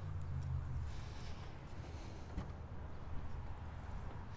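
Rear liftgate latch of a Jeep Compass releasing with a single click about two and a half seconds in, as the hatch is opened, over a low steady background rumble.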